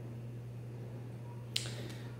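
A steady low electrical hum in a quiet room, then a single sharp click about one and a half seconds in, followed by a short breath in just before speech.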